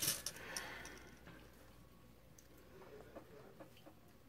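A few faint, soft clicks in a quiet room as a jelly bean is chewed.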